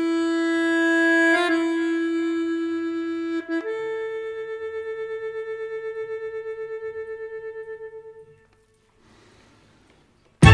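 Accordion music: one long sustained note, then a step up to a higher note about three and a half seconds in, held with a wavering tremolo and fading out near the end, followed by near silence.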